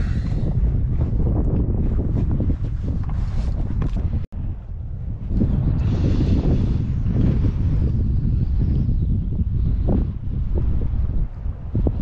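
Wind buffeting the microphone on a kayak out on rippled sea water, a steady low rumble with a few short water splashes. The sound drops out for an instant about four seconds in.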